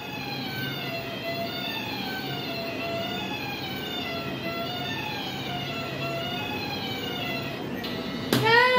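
Toy electric-shock reaction game's base unit playing a wavering electronic tune from its small speaker while the players wait. The tune cuts off near the end as the unit's light turns green, the signal to press, and the slowest player gets a mild shock.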